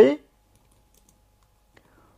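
A few faint keystrokes on a computer keyboard, typing a short command, after a spoken word ends at the start.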